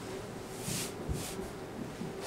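Soft rustling of clothing against a padded vinyl treatment table as a person rolls onto their side, in two short bursts, with a faint low thump of the body settling on the table about a second in.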